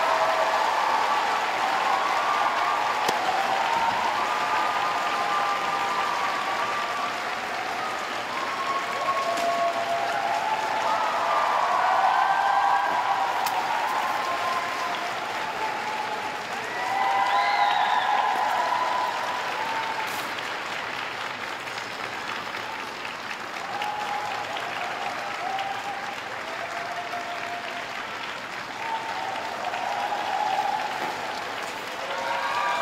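Crowd of spectators applauding steadily at the end of a figure skating program, with voices calling out above the clapping; the applause swells about seventeen seconds in and then slowly eases off.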